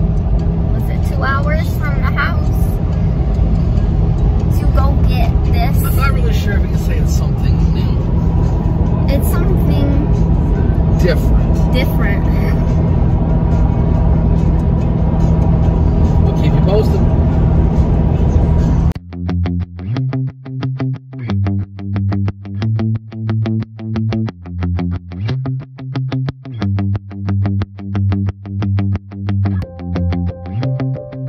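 Steady low road and engine rumble inside a moving pickup truck's cab, with faint voices now and then. About two-thirds of the way through it cuts suddenly to background music with distorted electric guitar and a steady beat.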